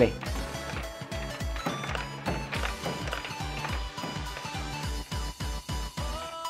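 Electronic tune with a quick, steady beat and held notes, the music of a coin-op '6-7 bola' pinball slot machine during a ball game.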